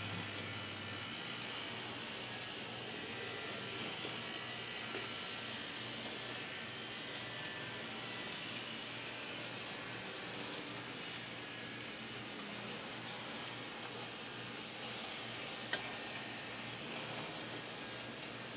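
Steady faint whir and hiss of Bachmann N-gauge Peter Witt DCC streetcars running continuously around the track, with a single small tick near the end.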